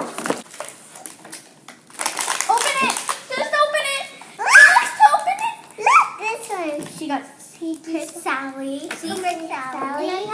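Young girls' excited, high-pitched voices and squeals, loudest about halfway through. In the first couple of seconds there is a light crinkle and rustle of small blind-bag wrappers being torn open.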